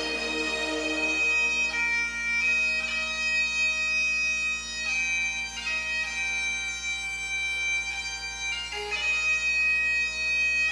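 Bagpipe music played back over a sound system: a melody of long held notes over a steady drone.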